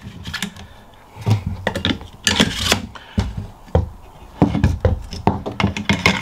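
A rifle stock being fitted back onto a lever-action rifle's receiver by hand: scraping and rubbing of the parts, with a string of clicks and knocks against the wooden tabletop.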